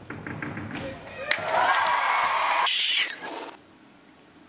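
Spectator crowd cheering and whooping for a vault, swelling about a second in and cutting off abruptly about three and a half seconds in.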